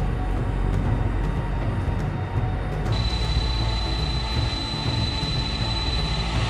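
Boeing 747 jet engines running with a steady rumble, a thin high whine setting in about three seconds in as the low rumble grows.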